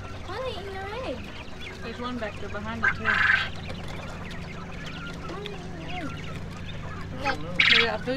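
Caged coturnix quail calling, with short loud, high calls about three seconds in and again near the end.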